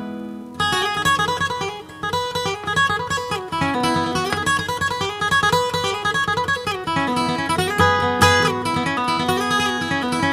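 Solo steel-string acoustic guitar playing an instrumental passage: a steady run of picked single notes over bass notes, after a brief quieter moment at the start.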